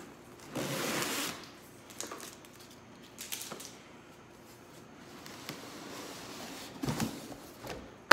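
Cardboard box being slit with a utility knife and opened: a scraping rustle of cardboard about half a second in, then scattered light clicks and rustles as the flaps and lid are handled.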